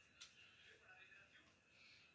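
Near silence: room tone, with one faint click about a fifth of a second in.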